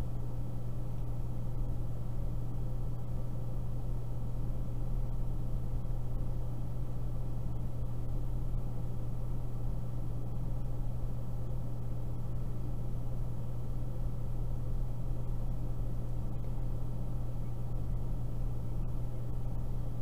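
Steady low hum with a constant hiss, unchanging throughout: background noise of the call recording, with no other sound.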